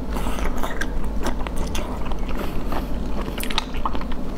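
Close-miked sucking and slurping of meat out of a shell held to the lips, with wet mouth clicks and smacks throughout and two longer hissing sucks, one at the start and one about two and a half seconds in.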